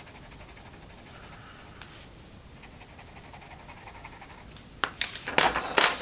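Derwent Coloursoft coloured pencil shading softly on smooth paper, barely audible at first. Near the end comes a quick run of louder scratchy strokes and sharp clicks.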